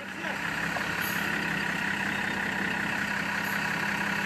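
A heavy vehicle's diesel engine, tractor or truck, running at a steady speed with no revving, as a stuck truck is being readied for a tow out of deep mud.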